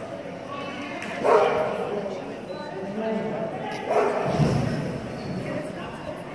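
A dog barking, a few sharp barks with the loudest about a second in and again about four seconds in, over faint background voices.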